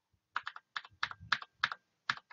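Computer keyboard keys pressed in a quick series, about ten clicks, as lines of code are removed in the editor.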